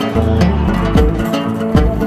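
Egyptian oud, a fretless lute, plucked in a melody of quick single notes that ring briefly, with low bass notes held underneath.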